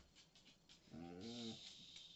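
A dog gives one short, low, pitched grumble lasting under a second, about a second in, with a faint hiss over it; the rest is near silence with faint ticks.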